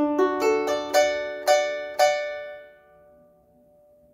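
Harp strings plucked: a quick figure of about seven notes over two seconds, an octave on D with an added third, in D major. The last note rings on and fades away.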